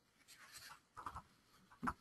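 A very quiet pause in a spoken presentation: room tone with a few faint, brief soft rustles, and a short soft sound just before the voice resumes.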